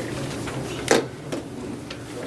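Small handling sounds in a quiet room: one sharp knock about a second in, then two lighter clicks, over a steady low hum.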